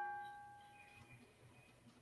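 The fading ring of a struck bell-like chime, a single steady pitch with overtones, dying away within the first second, then near silence.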